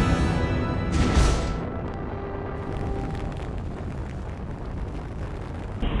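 A deep boom with a rushing noise that swells about a second in and fades into a low rumble, over music whose steady tones carry on faintly beneath.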